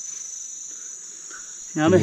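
Insects chirring in a steady, high-pitched drone that does not let up; a man's voice starts near the end.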